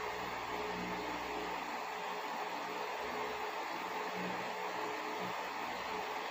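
Steady whirring hum and rushing noise of a small electric motor running, with faint steady tones beneath.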